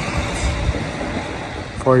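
Steady outdoor background rumble of road traffic, with speech resuming near the end.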